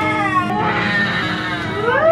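Newborn baby crying just after birth: a falling wail, a hoarse stretch, then a rising wail near the end, with background music under it.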